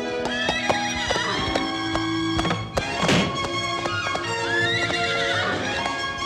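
Orchestral cartoon score with a horse whinnying and hoofbeats as a wild bronco bursts out and bucks, with a loud sweeping burst about halfway through.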